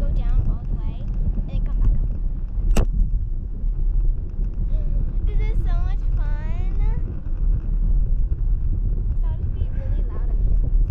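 Wind buffeting the microphone of a camera riding on a parasail in flight: a steady low rumble, with one sharp click a little under three seconds in.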